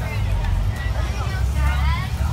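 Low, steady rumble of a moving bus heard from inside the cabin, with other passengers chattering faintly in the background.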